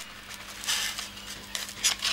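Soft rustling and scratching of hands working a pinned beetle specimen on paper and a foam block: two short rustles, about a second in and near the end, over a faint steady hum.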